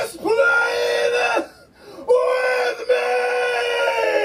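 A voice screaming in two long, high, steady-pitched cries, the second starting about two seconds in and held.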